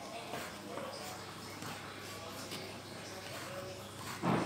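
Cleaver slicing wood ear mushrooms on a wooden chopping board: a run of light knocks of the blade on the board.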